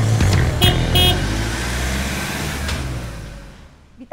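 Intro music with two short vehicle-horn beeps about half a second and a second in, after which the music fades out.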